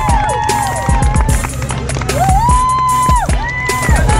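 Background music: a song with a sung melody over a steady drum beat and bass, with one long held note in the second half.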